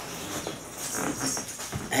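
A dog whining softly.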